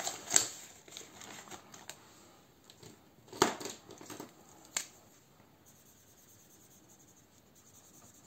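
A paper banknote rustling as it is folded and slipped into a ring binder's plastic pocket, with soft handling noises and a few sharp clicks and taps, the loudest about three and a half seconds in, then near silence.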